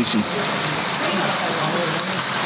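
Steady rush of water, typical of the running water at koi tanks, with a gloved hand splashing in a plastic koi bowl at the start.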